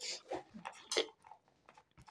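Dog chewing a small treat it has found on the floor: a few faint, short crunches in the first second.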